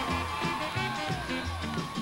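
Quiet instrumental background music with a low bass line.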